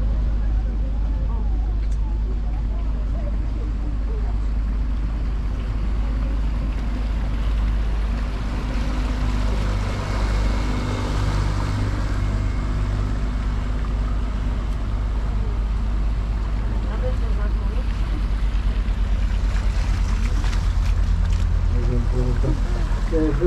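Tour boat under way with a steady, loud low rumble, with faint voices in the background.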